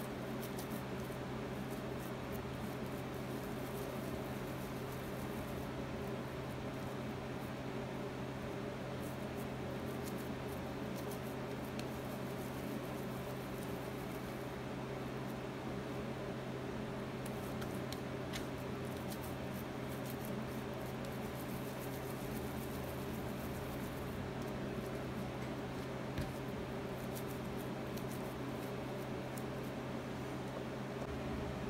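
Hands rolling sticky whole-barley bread dough into balls: faint, irregular soft squishing and small clicks, over a steady low hum.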